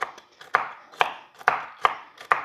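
A kitchen knife chopping pecans on a wooden cutting board: about five sharp chops, roughly two a second.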